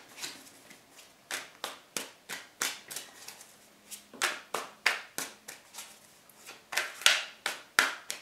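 A tarot deck being shuffled by hand, the cards slapping together in a series of sharp taps about two or three a second, fainter at first and louder from about halfway through.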